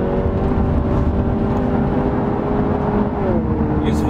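Infiniti Q50's engine heard from inside the cabin, pulling under light acceleration with its pitch creeping up, then dropping about three seconds in as the automatic gearbox upshifts from third to fourth. Steady tyre and road rumble underneath.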